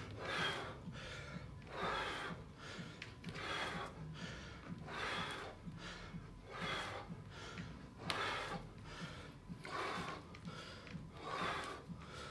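A man breathing hard from exertion, short breaths in and out in a steady rhythm, roughly one every second.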